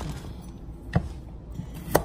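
Kitchen knife cutting red potatoes on a wooden cutting board: two sharp knocks of the blade striking the board, about a second apart.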